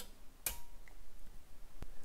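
Two clicks from a control panel as its selector switch is turned from auto to off and the relay drops out: a sharp click about half a second in and a fainter one near the end.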